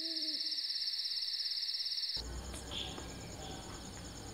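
A single short owl hoot at the very start over a steady, high, rapidly pulsing insect trill of a night-time scene. About two seconds in the trill cuts off abruptly, leaving a fainter low hum with a much quieter trill.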